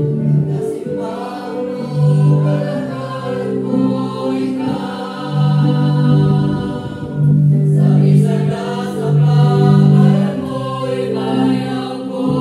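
Mixed choir of women's and men's voices singing a sacred song unaccompanied, in phrases of long held chords.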